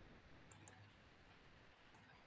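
Faint computer mouse clicks over near silence: two quick clicks about half a second in and one more near the end.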